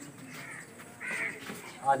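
Crows cawing faintly a few times in the background.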